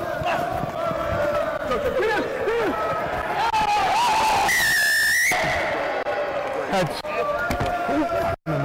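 Rugby referee's whistle, one long blast about halfway through, as a try is scored, over shouting players and spectators.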